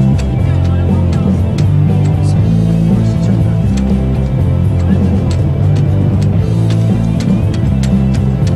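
Loud music with a deep, stepping bass line and percussion hits.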